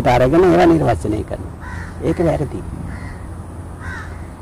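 A man's voice speaks for the first second. Then a crow caws a few short times in the background between quieter stretches.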